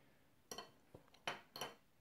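A few faint, short clicks and taps in quick succession, starting about half a second in and stopping shortly before the end.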